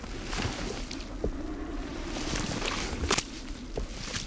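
Soft scuffing and shuffling of a Weddell seal shifting its heavy body on packed snow, with a few short sharp clicks, the strongest about three seconds in.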